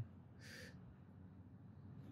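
Near silence: room tone, with a faint breath about half a second in.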